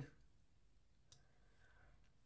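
Near silence: room tone, with a single faint click about a second in.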